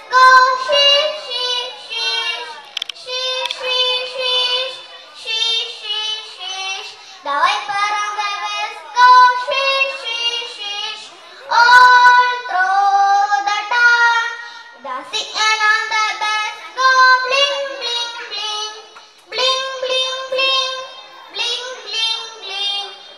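A young girl singing an English children's action song solo, the voice alone in sung phrases of a few seconds with held notes and short breaths between them.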